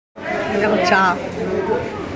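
Speech: a woman says a single word about a second in, over the chatter of a restaurant dining room, after a brief dropout at the very start.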